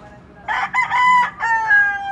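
A rooster crowing loudly: one crow starting about half a second in, broken into several parts and ending on a long note that drops in pitch.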